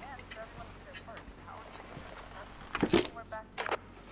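Faint voice and low room hum, then a few sharp knocks and clinks close together about three seconds in, from the tray table being handled and moved.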